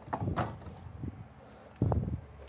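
Wooden amplifier case being handled on a workbench: a couple of light knocks as it is lifted at one edge, then a heavy thump near the end as it is set back down.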